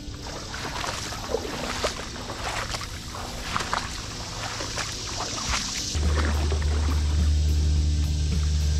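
Background music, with a deep, steady bass note coming in about six seconds in, over short splashes of water as someone wades in a creek.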